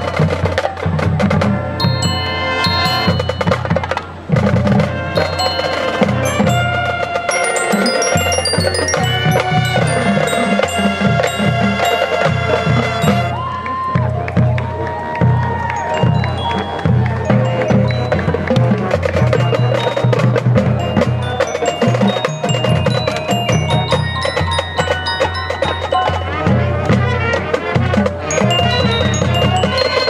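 Marching band playing its field show, with mallet percussion such as glockenspiel and bells ringing out high notes over drums. About thirteen seconds in, the high bell notes drop out and lower held melody notes carry on over the percussion.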